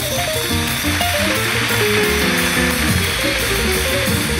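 Jazz piano trio playing live: fast runs of piano notes over double bass and drums with cymbals ringing throughout.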